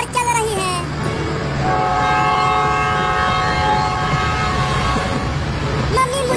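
Train horn sounding one long steady chord, starting about two seconds in and stopping near the end, over the steady low rumble of a train on the rails.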